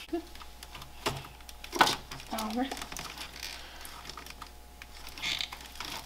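Scattered light metal clicks and rattles of a car battery terminal clamp being loosened and worked off its post to disconnect the battery, with one sharper click a little under two seconds in.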